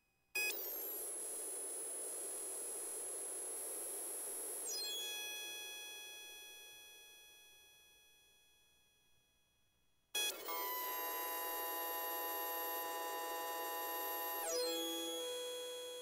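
Experimental synthesizer sounds: twice a hissy wash with many steady high tones starts suddenly, holds for about four seconds, then shifts and fades slowly away. Near silence lies between the two.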